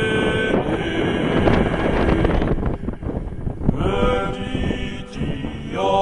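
A slow, chant-like song sung in long held notes, broken after about half a second by roughly two seconds of wind rushing and buffeting on the microphone. The singing comes back about four seconds in and again near the end.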